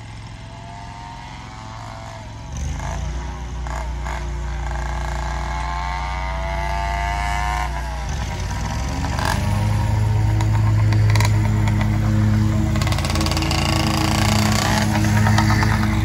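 YD100 two-stroke motorized-bicycle engine revving up in repeated rising runs, then running louder and closer in the last several seconds.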